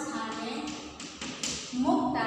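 A woman's voice speaking, broken by a couple of sharp chalk taps on a blackboard about a second in, as words are written.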